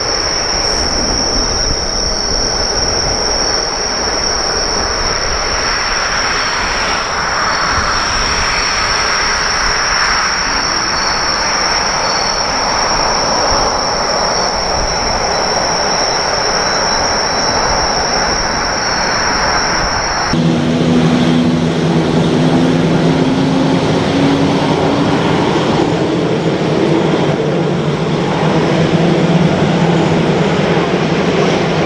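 Airbus A350's Rolls-Royce Trent XWB engines at takeoff power, a steady jet roar through the takeoff roll and lift-off, with insects chirping in a steady high tone behind. About twenty seconds in the sound cuts to another A350 taxiing, its engines a lower hum with a tone that rises slowly.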